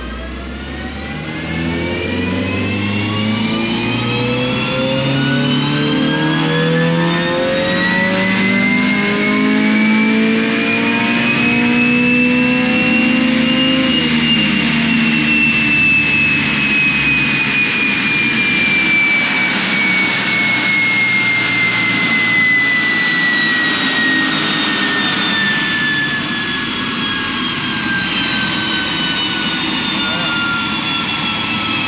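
Honda Civic's swapped-in K-series four-cylinder engine in a full-throttle dyno pull, heard from inside the cabin: its pitch climbs steadily for about fourteen seconds, then falls slowly as the car coasts down. A high whine rises and falls with it. The run shows VTEC and cam timing now working.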